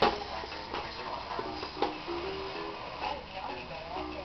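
Electronic baby toy playing a short tune of plain steady notes alternating between two pitches, with sharp plastic clicks and knocks as it is handled, the loudest click right at the start.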